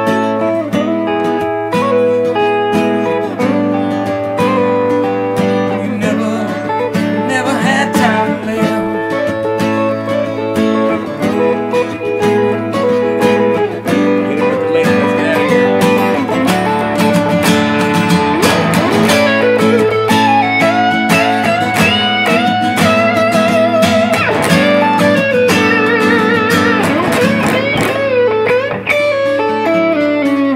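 An acoustic guitar and an electric guitar played together, the acoustic strumming while the electric plays a lead line; through the second half the lead holds notes that waver in pitch.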